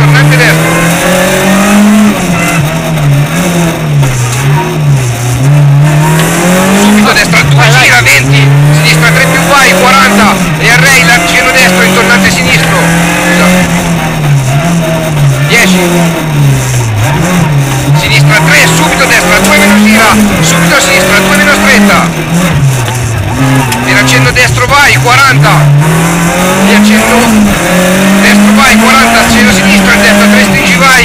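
Rally car engine heard from inside the cockpit, revving up and falling back again and again through gear changes and lifts.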